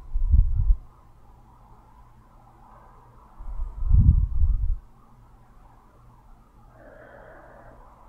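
Two breaths blowing onto a nearby microphone, heard as low, muffled puffs: a short one at the very start and a longer one about three and a half seconds later.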